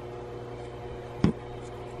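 Steady low electrical-mechanical hum with a hiss, like a fan or shop machinery running, with one brief short sound about a second and a quarter in.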